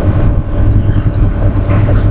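A loud, steady low rumble with no clear rhythm or pitch changes.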